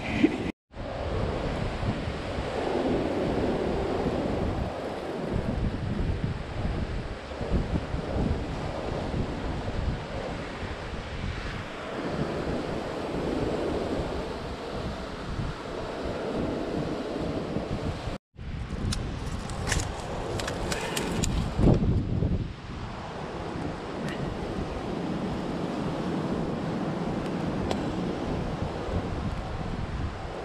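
Wind buffeting the microphone over surf washing onto a beach, broken by two abrupt cuts. About two-thirds of the way through there is a brief run of sharp clicks.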